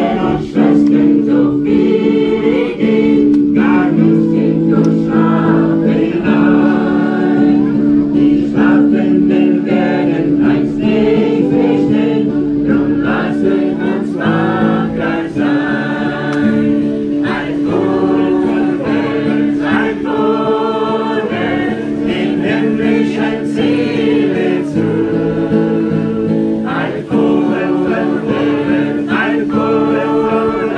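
A small group singing an old German hymn together, accompanied by an acoustic guitar, the sung notes held long and changing steadily without a break.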